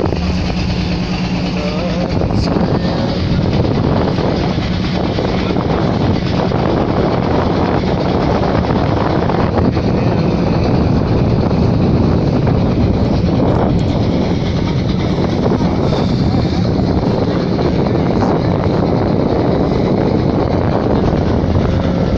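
Engine of a small wooden passenger boat running steadily while under way: a constant, even drone with a rushing hiss over it.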